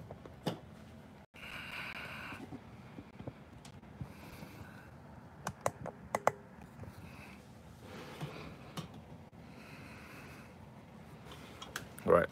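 Light clicks and taps of a small hard-plastic 3D-printed catapult being turned and handled in the hand, with a few sharper clicks a little past the middle.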